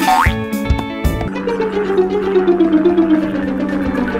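Upbeat background music with a cartoon falling sound effect laid over it: a quick rising glide at the start, then a long whistle-like tone sliding steadily down in pitch over the last two and a half seconds, marking a toy foam glider's dive into a bush.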